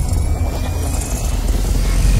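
Cinematic logo-intro sound effect: a deep, steady low rumble with a faint high tone gliding slowly upward.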